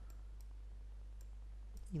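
A few faint, separate computer-mouse clicks over a steady low hum.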